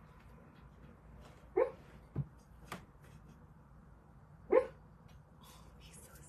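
A sleeping, dreaming dog giving two short barks in its sleep, about a second and a half in and again near the end, the second louder. There is a faint knock between them.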